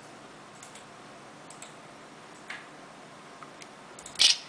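Faint, scattered small clicks, about four of them, over a steady low hiss.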